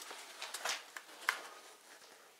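Faint scuffing and rubbing of a cardboard shipping box being handled and tipped up by hand, with a few short scrapes about half a second and just over a second in.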